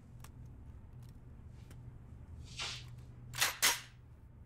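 Gunshots: a softer report about two and a half seconds in, then two sharp shots about a quarter second apart near the end, the loudest sounds here.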